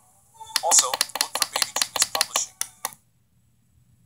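A rapid run of sharp clicks, about eight a second, mixed with a brief voice, which cuts off suddenly about three seconds in, leaving near silence.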